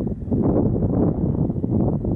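Strong wind buffeting the microphone: a loud, uneven, gusty rumble low in pitch.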